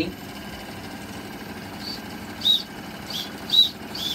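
Several short, high toots from a Wilesco model steam engine's whistle in the second half, two of them louder than the rest, over the steady running of the small steam engines.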